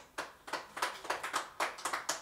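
A quick, uneven run of sharp taps, about five a second, with a little room echo.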